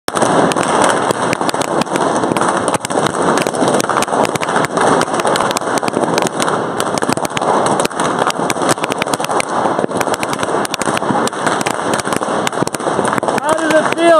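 Many latex balloons from a twisted-balloon sculpture bursting in rapid, irregular pops as a crowd stomps and pulls them apart. A crowd of children and adults shouts and chatters throughout.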